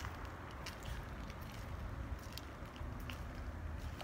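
Footsteps of a person walking on a parking lot, heard as a few faint ticks over a low steady rumble.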